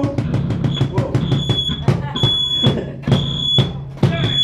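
Instrumental break of a live band: a drum struck in a steady rhythm over a low electronic drone, with a high piercing tone sounding in several stretches.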